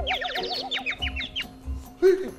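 Cartoon-style comedy sound effect: a wobbling, warbling tone with a quick run of falling boing-like chirps, stopping a little before the end.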